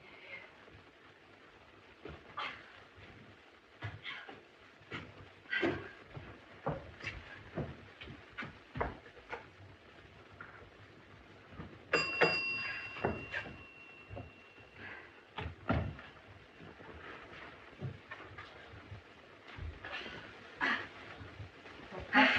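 Footsteps on wooden stairs and heavy panting breaths from a woman climbing with a laden wicker laundry basket. About twelve seconds in, a doorbell rings with a steady tone for about three seconds, followed by more footsteps and breathing.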